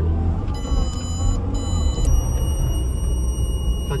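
Car engine and road rumble heard inside the cabin as the car accelerates and is held at 35 by a GPS geo-fence speed limiter. About half a second in, a high-pitched electronic tone of several pitches comes on, breaks off briefly twice, then holds steady.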